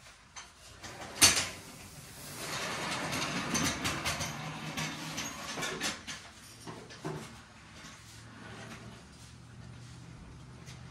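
A sharp knock about a second in, then several seconds of scraping and clattering handling noise that fades to a faint low steady hum.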